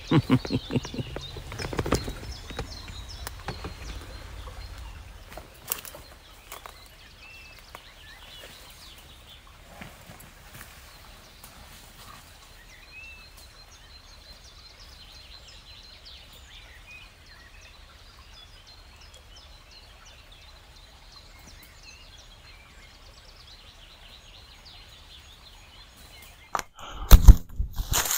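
Rustling and knocks of the camera being handled and carried for the first few seconds, then quiet woodland ambience with a few faint bird chirps. Loud knocks and rustling start just before the end.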